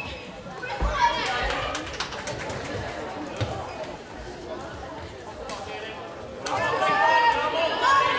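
Floorball game sounds in a sports hall: players calling out and chattering, with a few sharp clacks of sticks on the plastic ball in the first half. The calling grows louder about six and a half seconds in.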